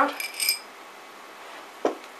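A few quick, bright clinks of small hard objects being set down, ringing briefly, then a single short knock near the end.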